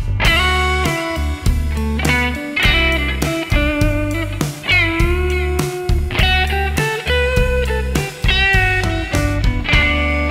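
Electric guitar played through a Line 6 POD set to its Black Panel (Fender Blackface-style) amp model with a 4x10 cab, a little reverb and the delay-with-compressor effect, playing a melodic line with several string bends over a drum kit.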